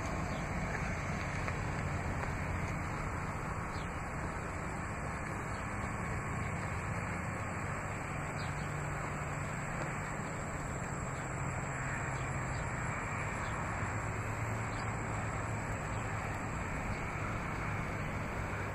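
Steady outdoor background noise with a low, even hum and no distinct events.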